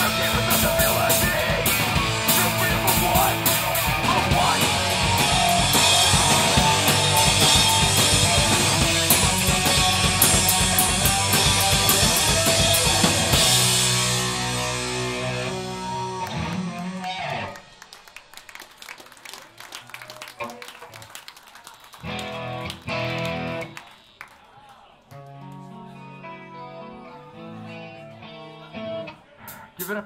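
Hardcore punk band playing live with distorted electric guitars, bass and a drum kit; the song ends about halfway through, a last chord rings out and fades over a few seconds, and then an electric guitar plays a few quiet chords between songs.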